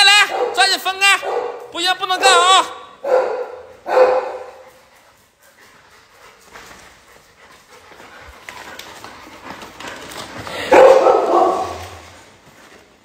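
A dog barking in a rapid run of short, high-pitched barks during rough play-wrestling with another dog, followed by two more single barks a few seconds in. After a quieter stretch, a louder, rougher burst of sound comes near the end.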